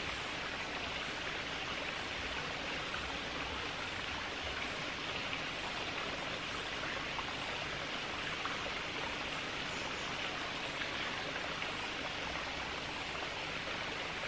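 Steady outdoor background noise: an even, soft rushing hiss with no distinct events.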